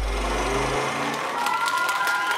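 Audience applauding and cheering at the end of a dance number, while the low ring of the music's final chord dies away in the first second.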